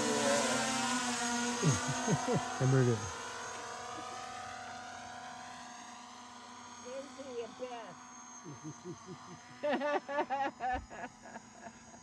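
Small quadcopter drone's propellers whining in several steady tones, fading away as the drone flies out into the distance.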